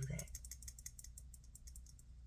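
A quick run of small, light clicks and rattles from hands handling a perfume bottle and its white box.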